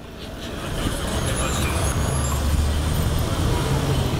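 A nearby motor vehicle's engine running at a low, steady pitch, growing louder over the first second and then holding, over street traffic noise.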